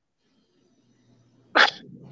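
Near silence, then a single short, sharp burst of breath from a person about one and a half seconds in.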